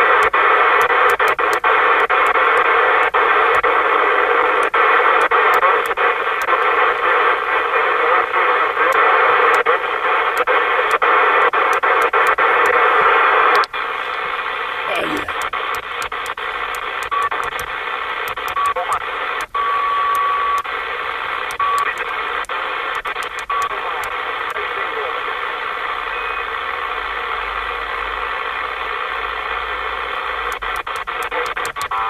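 Receiver audio from a Lincoln II+ CB/10-metre radio as it is tuned across channels: loud band hiss and static with faint, garbled distant voices, broken by clicks. About 14 s in the sound drops quieter on the switch to single sideband (USB), and a brief whistle slides down in pitch, followed by a few short beeps.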